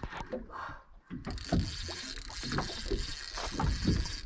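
Water sloshing and slapping against the hull of a small fibreglass fishing boat at sea, with a steady hiss that sets in about a second in.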